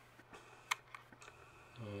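Faint steady low hum with a single sharp click about two-thirds of a second in, and a few fainter ticks.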